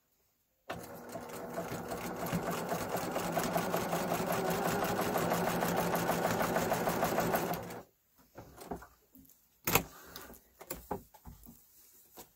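Sewing machine stitching a diagonal seam across two overlapping cotton binding strips. It starts about a second in, runs steadily for about seven seconds and stops abruptly. A single sharp knock and light fabric handling follow.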